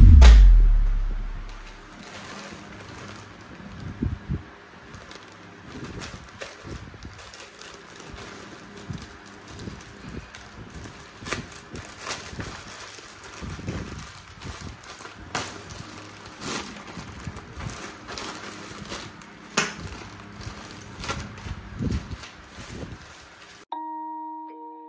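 A loud low boom at the start, dying away over about two seconds. Then a plastic mailer bag being handled and torn open, with irregular crinkling, rustling and tearing, and a thin plastic wrapper crinkling.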